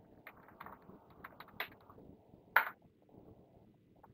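Computer keyboard and mouse clicks: a quick run of light keystrokes, then one louder, sharper click about two and a half seconds in.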